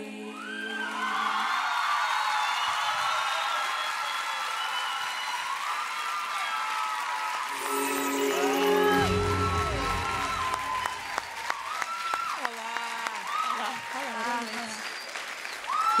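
Studio audience applauding and cheering with many high shouting voices after a song ends. A short burst of music with deep bass sounds about eight seconds in.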